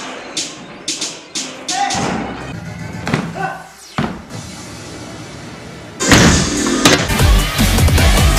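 Edited-in music: a track with beats and a sung line that breaks off about four seconds in, then a louder, bass-heavy track with a strong beat starting about two seconds later.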